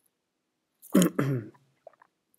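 A man briefly clearing his throat about a second in: one short, harsh burst with a voiced tail.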